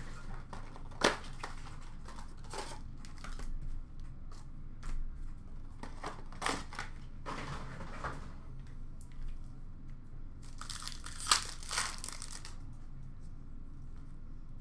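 Trading-card packaging being handled: on and off crinkling, rustling and tearing of pack wrappers and card boxes, with a few sharp clicks. The busiest stretches come about midway and again near the end.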